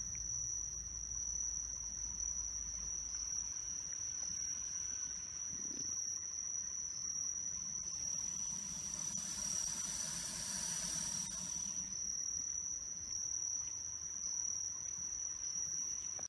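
Night insects calling in a steady, unbroken high-pitched trill. In the middle a higher, hissing insect buzz swells in and fades out again.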